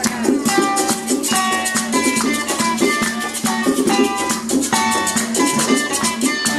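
Live Puerto Rican folk music: a plucked-string melody of quick picked notes over strummed accompaniment, with a steady fast maraca rattle and hand drums keeping the rhythm.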